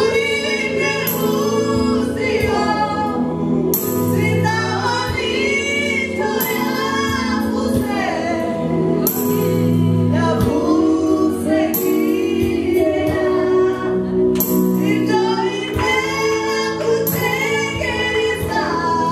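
Gospel worship song led by a woman singing into a microphone, with a group of voices singing along over sustained low keyboard or bass chords that change every second or two.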